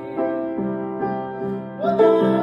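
Piano playing sustained chords, struck again about twice a second. A man's singing voice comes in with a rising note near the end.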